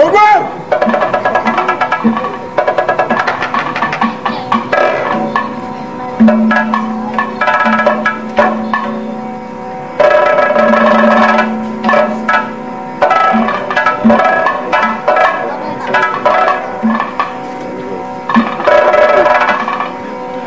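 Kathakali vocal music: a sung padam with hand drums and small cymbals keeping time over a steady drone, the singing holding long notes around six and ten seconds in.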